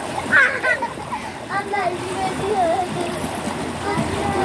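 Children's high voices calling and talking, over a steady rushing noise.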